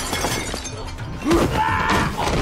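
Film fight-scene soundtrack: crashing and breaking of material over a music score, with a loud yell about a second and a half in.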